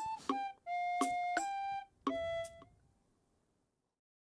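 A short instrumental melody of a few held notes, the longest lasting about a second, stopping abruptly about two and a half seconds in.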